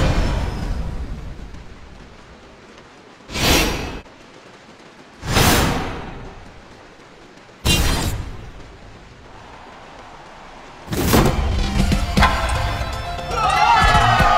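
Dramatic whoosh-and-hit sound effects for slow-motion martial-arts kicks, five heavy strikes a second or two apart, each swelling and dying away. Near the end a crowd breaks into cheering.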